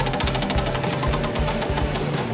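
Spinning prize wheel, its pointer clicking rapidly against the pegs on the rim, thinning out near the end; background music plays underneath.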